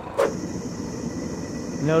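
Gas-fired melting furnace burner running with a steady hiss. It starts abruptly with a short sharp sound a fraction of a second in.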